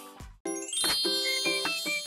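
Bell-like jingle: about half a second in, after the previous music fades out, ringing chime tones start, with a run of short high notes over a bright sustained shimmer.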